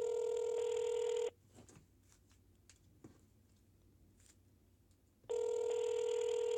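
Telephone ringback tone over a smartphone's speakerphone: a steady buzzing tone that stops about a second in, a four-second gap, then the tone again near the end, the two-seconds-on, four-seconds-off cadence of an outgoing call ringing unanswered.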